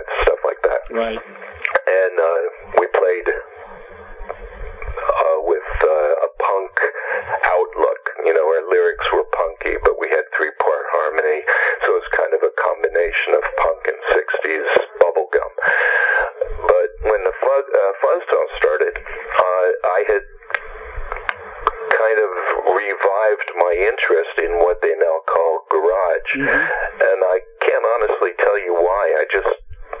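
Only speech: a man talking on and on over a telephone line, the voice thin and narrow.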